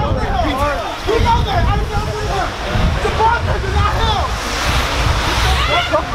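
Several people's voices talking and calling out over one another, too jumbled to make out, with wind rumbling on the microphone.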